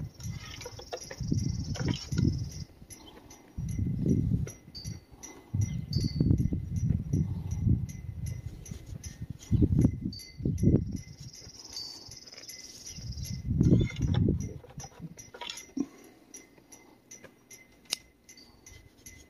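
Intermittent rustling and handling noise from a cloth shop rag being wiped and moved close to the microphone, in several uneven swells about a second long. Faint short high chirps sound now and then.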